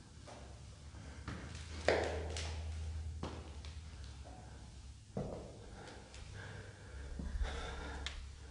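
A person breathing and sniffing close to the microphone, with a few sharp breaths about two, three and five seconds in, over a steady low hum.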